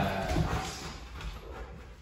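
A dog's paws and claws on a hard floor as it trots up and sits, with a thud at the start and a few knocks about half a second in, fading toward the end.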